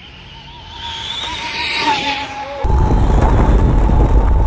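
A high-speed electric RC car's 1800 KV brushless motor whining at full throttle with its tyres hissing on concrete, swelling as it passes about two seconds in. Partway through the sound switches abruptly to the car's own onboard view: a heavy wind and vibration rumble on the mounted camera's microphone, with the motor whine still running.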